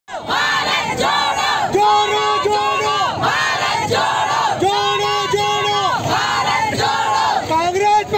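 Crowd of marchers chanting political slogans in unison, the same shouted phrases repeating in a steady rhythm.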